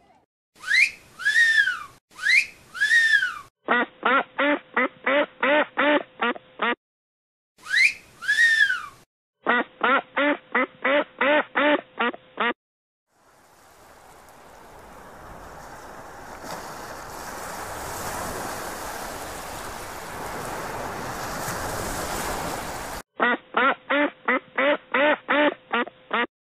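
Edited-in sound effects of a duck quacking: runs of about ten quick quacks, several times over, alternating with high squeaky calls that rise and fall in pitch. In the middle a rushing, wave-like noise swells for about ten seconds and cuts off suddenly before a last run of quacks.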